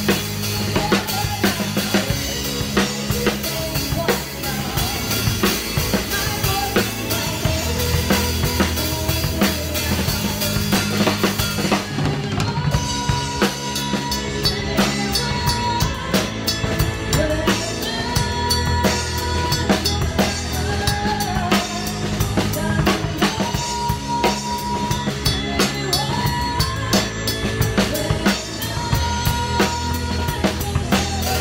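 A drum kit played close up in a live band, kick, snare and cymbals keeping a steady beat over bass and held melody notes.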